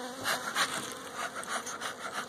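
Honeybees buzzing over an open hive while a bee smoker's bellows are worked, giving irregular puffs and rubbing.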